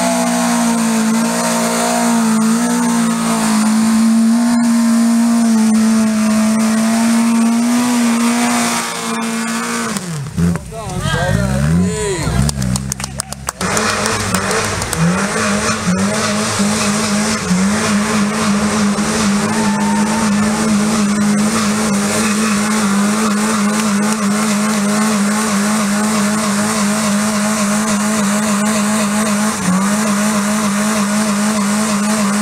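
Car engine held at high revs as a trial car works its way up a muddy slope. About ten seconds in the revs drop and swing up and down for a few seconds, then an engine is held steady at high revs again for the rest of the time.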